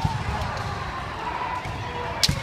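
Kendo bouts in a large wooden-floored sports hall: a single sharp impact at the very start, then echoing hall noise with drawn-out shouting voices from the fighters and courts around.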